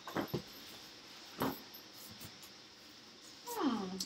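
A few scattered knocks and rustles as a backpack and papers are handled and a card is pulled out, then a short falling hum of a woman's voice near the end.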